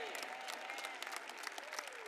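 Light audience applause, many hands clapping at once, with a few faint voices mixed in.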